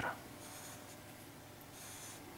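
A felt-tip marker rubbing faintly on paper as it shades in an area, a little louder near the end.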